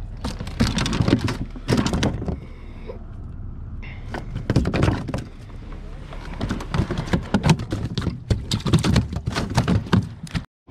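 Irregular knocks, taps and rustling handling noise against the hard plastic hull and deck of a fishing kayak, thick from about half a second in to the end.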